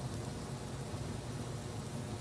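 A sandwich sizzling faintly and steadily on the hot lower plate of an open electric panini grill.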